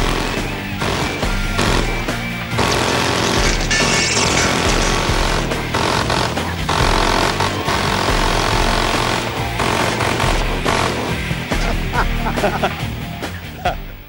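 Multi-barrel rotary minigun firing one long continuous burst at about 50 rounds a second, heard as a dense, unbroken roar. Music plays under it.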